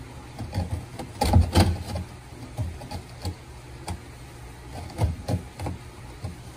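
A chunk of dry aquarium rock knocking and scraping against the sides of a clear plastic tank as it is turned to fit, in a handful of short knocks, the loudest two about a second in.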